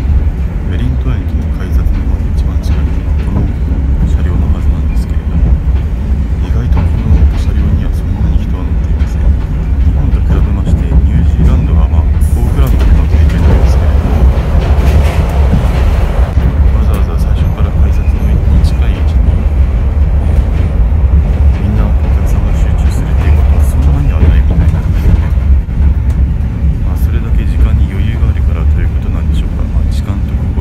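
Loud interior noise of a locomotive-hauled passenger carriage running at speed over rough track: a heavy, steady low rumble with rattling and clatter from the rails.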